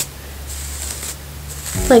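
Faint, steady rustling hiss of a long section of detangled hair being handled with the fingers, over a low room hum.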